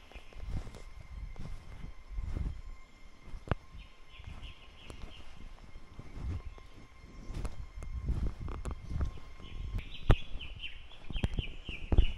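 Irregular footsteps and thumps of the camera being carried while walking, with a few sharp clicks. A bird calls in short runs of rapid high chirps about four seconds in and again over the last two seconds.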